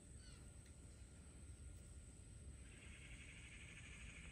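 Near silence outdoors: faint low rumble with a few brief bird calls just after the start, and a faint steady buzz that comes in about two and a half seconds in.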